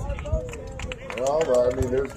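Men shouting across a soccer field, words indistinct, with one long shout near the end.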